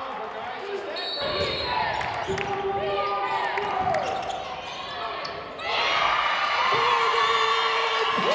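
Live court sound of a basketball game in an arena: the ball bouncing and sneakers squeaking on the hardwood, under a mix of voices from players, bench and crowd. The voices become louder and more raised a little before six seconds in, as the home side scores.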